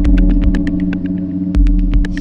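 Instrumental electronic synthpop music: a drum machine ticking rapidly, about eight clicks a second, with deep kick pulses under held synthesizer tones.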